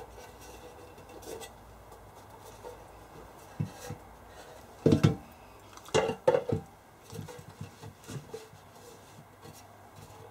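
Knocks and clunks as the decade resistance box's front panel and switch assembly is handled and fitted back toward its metal case: a couple of light knocks, then the loudest ones about five and six seconds in, followed by scattered smaller taps.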